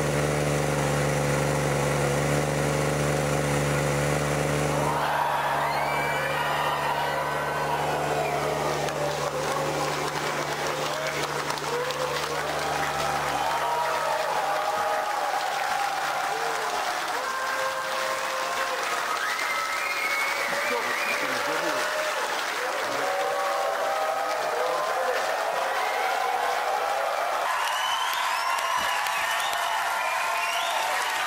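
A steady low drone for about the first five seconds, then a large studio audience cheering, screaming and applauding, with music underneath.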